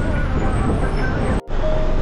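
Steady low rumble of a moving bus's engine and road noise heard from inside the bus, cut off about one and a half seconds in. Background music begins near the end.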